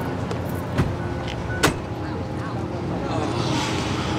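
A car engine running, a steady low hum, with two short sharp knocks in the first two seconds.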